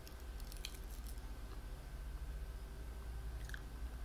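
A person chewing a psilocybin (magic) mushroom, with a few crisp bites in the first second and another about three and a half seconds in, over a low steady hum.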